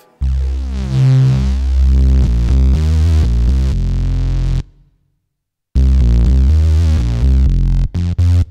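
Korg KingKORG virtual-analogue synthesizer played from its keyboard through its distortion pre-effect: loud, heavy low notes thick with overtones. The playing stops for about a second midway, then starts again.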